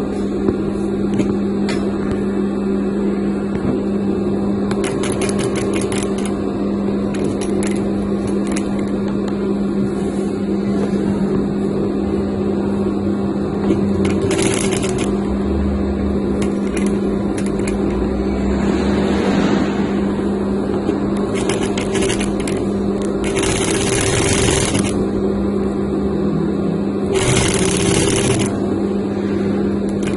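Industrial sewing machine running steadily with a constant hum as it stitches gold braid trim onto satin fabric, with three short bursts of hiss in the second half.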